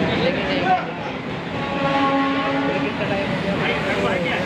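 Street crowd chatter, with a steady horn sounding once for about a second and a half in the middle.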